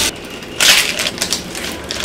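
A small plastic sachet being crinkled and torn open by hand: a loud rip about half a second in, then a run of sharp crackles.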